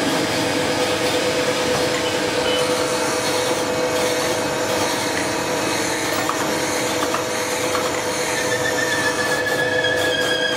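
Cylinder head resurfacing grinder working across the deck face of a six-cylinder Hino truck head under flowing coolant. Its grinding is steady, over a constant machine hum.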